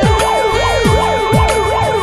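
Instrumental break in a Nepali pop song: an electronic line sweeping up and down in quick, even glides, over a held note and a steady drum beat.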